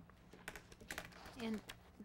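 A few scattered, faint keystroke clicks of typing on a laptop keyboard over a low steady hum. A voice says "And" near the end.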